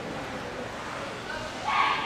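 A dog barks once, loudly, near the end.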